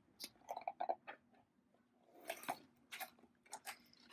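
Paper release backing being peeled off a fusible-web-backed fabric piece: faint crinkling and crackling in short, irregular bursts, with small clicks. The bursts come in two clusters, one in the first second and another in the second half.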